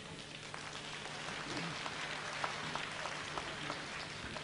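Faint, scattered clapping from an arena audience, a few separate claps at a time, over a low steady hum.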